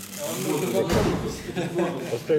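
Indistinct conversational speech from people close to the microphone, with a short low bump about a second in.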